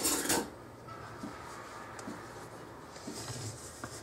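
Kitchen handling sounds at a stand mixer: a brief noisy rush at the very start, then a quiet low hum with a few light knocks near the end as a spatula meets the stainless steel mixing bowl.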